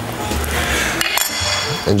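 Background music with a steady bass line. A little past a second in comes a brief high, clinking ring.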